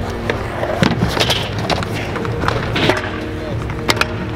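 Stunt scooter wheels rolling on concrete and a skatepark ledge, with several sharp clacks of the deck and wheels hitting the surface, the last one near the end. Background music plays throughout.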